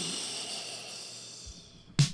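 A long breathy hiss that slowly fades away over about two seconds.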